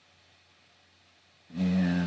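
Quiet room tone, then about a second and a half in, a man's voice making one short held sound without words, steady in pitch, running on past the end.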